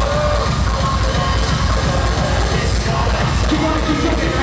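Loud live music with a heavy, steady bass beat and a melody line above it, heard over an arena sound system from among the audience.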